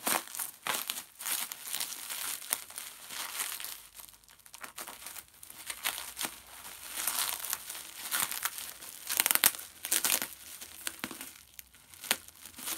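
Plastic bubble wrap crinkling and crackling as it is cut with a craft knife and pulled away, in irregular bursts, loudest a little past the middle.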